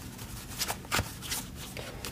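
Quiet taps and rustles of small cardboard puzzle-cube boxes being handled and shifted on a tabletop, a few light clicks spread through.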